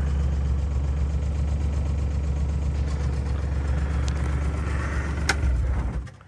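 Side-by-side utility buggy's engine running steadily as it drives across a field, a continuous low rumble. A single sharp click comes about five seconds in, and the sound drops away abruptly at the end.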